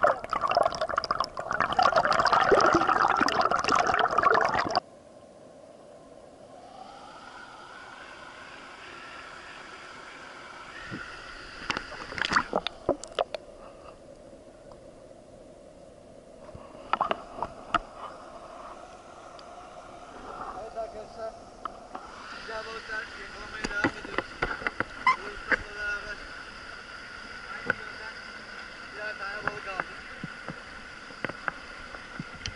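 Stream water heard through a submerged camera: a loud rush of moving water for about the first five seconds, then a steadier, muffled underwater hiss with scattered sharp clicks and knocks.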